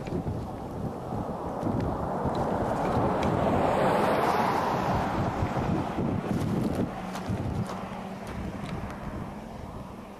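A vehicle passing on the highway, its road noise swelling to a peak about four seconds in and then fading, with wind buffeting the microphone.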